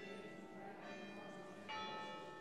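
Church bells ringing faintly, a new strike coming roughly every second, with a louder strike near the end.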